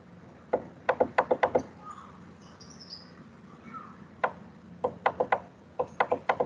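Sharp plastic clicks from a computer being worked to scroll a web page. There is a quick run of about seven clicks in the first second and a half, and another run of five or six near the end.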